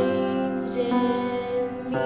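A young girl singing one long held note over piano chords. The chords change about a second in.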